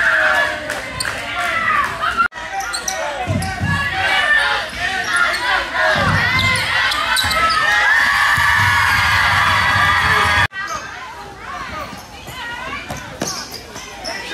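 Youth basketball game in a gym: a basketball bouncing on the hardwood floor, sneakers squeaking, and players and spectators shouting in the echoing hall. The sound drops out for an instant twice at edits.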